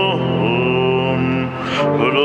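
Slow hymn sung by voices over a sustained accompaniment, holding one long note through most of it.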